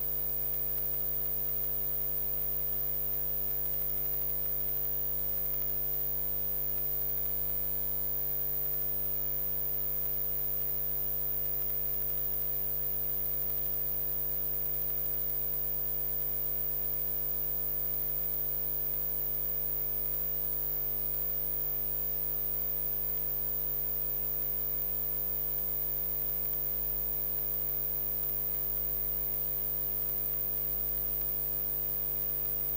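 Steady electrical hum made of several constant tones over a faint hiss, unchanging throughout.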